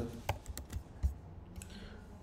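A few scattered keystrokes on a computer keyboard, the loudest shortly after the start.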